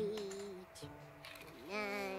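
Cartoon soundtrack: background music with a character's voice, its pitches held steady and moving in steps.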